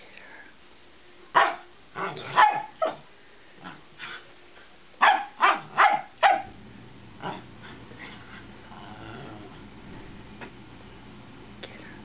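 Dogs barking in play: one sharp bark, then a short run of barks, then four quick barks about a third of a second apart, after which only a few faint sounds follow.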